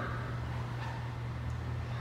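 A steady low hum under faint room noise, with no distinct event.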